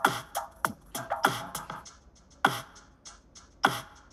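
GarageBand Apple Loop 80s-style electronic drum beat playing back: separate kick and snare hits a fraction of a second to about a second apart, the kick's low thud falling in pitch.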